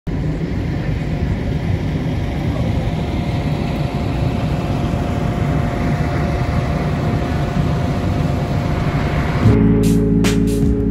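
Outdoor vehicle noise: a steady, heavy engine rumble with a faint steady whine. It plausibly comes from the idling diesel engine of a parked fire engine. Near the end it cuts off abruptly and music begins, with steady notes and regular percussive hits.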